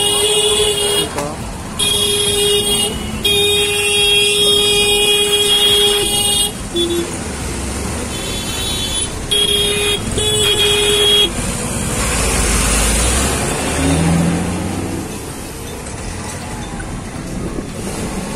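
Vehicle horn honking in four long, steady blasts over the first eleven seconds of street traffic, followed by the low rumble of a vehicle on the move.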